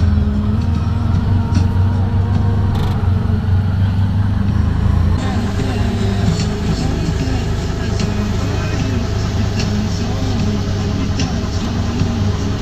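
Steady engine drone and rumble heard from inside a moving passenger vehicle, with indistinct voices in the background.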